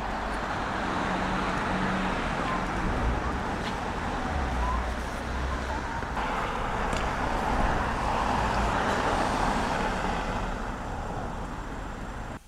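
Steady roadside traffic noise, with no single passing car standing out.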